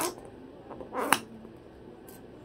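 A cockatoo at work on a piece of cardboard in its beak: short rasping bursts right at the start and again about a second in, the second ending in a sharp snap.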